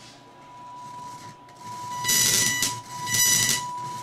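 A steady 1 kHz test tone played through an Audio Source SS Six surround processor and a stereo receiver, growing louder as the volume is turned up. Twice, about two and three seconds in, it breaks into loud scratchy static. This is the sign of a dirty volume control pot.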